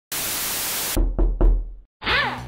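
Sound effects for an animated logo: a burst of static hiss lasting about a second that cuts off sharply, then three deep knocks in quick succession that die away.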